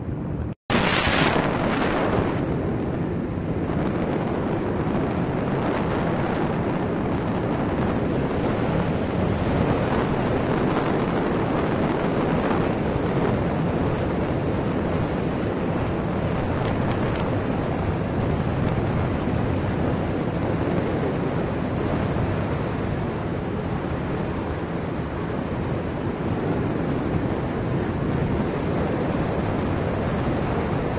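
Steady rush of wind buffeting the microphone and water hissing past the hull of a moving motorboat, with a brief dropout about half a second in.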